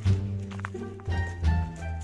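Background music with steady, held low bass notes.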